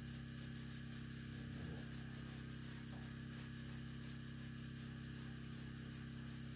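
A hand-held pad rubbing back and forth over the textured metal side of a wood stove in quick repeated strokes, over a steady low hum.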